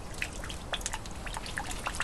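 Steady outdoor background noise with many scattered, irregular faint ticks.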